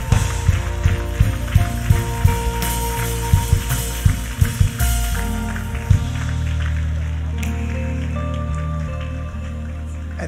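Church worship music: sustained keyboard chords over a bass. A run of sharp hits goes through the first half and stops about five to six seconds in, leaving the held chords alone.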